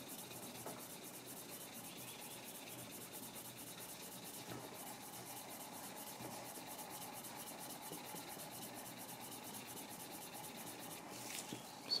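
Faint, steady rubbing of a hand-held edge slicker worked back and forth along a dyed and waxed leather edge, burnishing the wax and dye into the edge.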